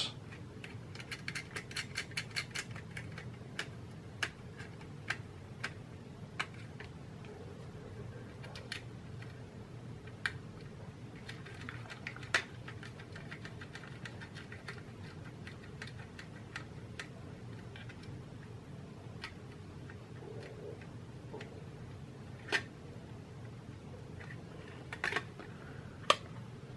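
Faint, scattered metallic clicks and ticks as small nuts are fitted by hand onto the metal toggle switches of a circuit board set in a tin-plated steel mint tin, over a low steady hum. The clicks come quickly in the first few seconds, then only now and then.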